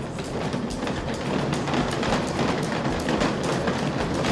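Roller conveyor rattling steadily, a dense run of small rapid clatters, as strapped stacks of panels roll over its steel rollers.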